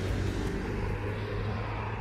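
A car engine running with a steady low hum that fades out near the end.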